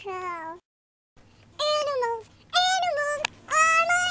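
A human voice sped up into very high-pitched, fast chatter, in short phrases with some syllables held on a steady pitch. It drops out to dead silence for about half a second near the start, then comes back in three short bursts.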